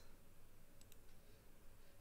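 Near silence with a few faint clicks of a computer mouse button near the middle.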